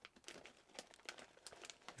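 Faint crinkling and small crackles of a chip bag's plastic as a scalpel cuts through it.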